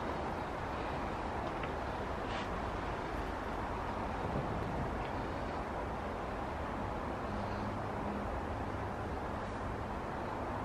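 Steady background noise, an even hum and hiss with no distinct events.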